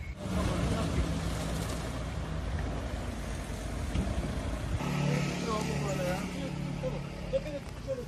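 A vehicle engine running steadily at idle, with indistinct voices in the background.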